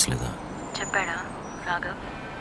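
Speech on a phone call: a man's voice briefly at the start, then two short, faint higher-pitched voice sounds, about a second in and near the end, over a low steady background hum.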